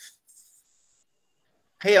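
Near silence in a pause of a man's speech over an online call, with only a faint brief hiss early on; his voice comes back just before the end.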